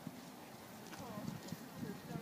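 Faint, dull hoofbeats of a horse cantering on a sand arena, with low voices in the background.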